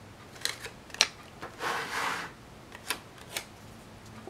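Hands handling a spiral-bound paper planner on a tabletop: a few sharp clicks and taps, the loudest about a second in, and a brief rustling scrape in the middle as the planner is turned and slid across the table.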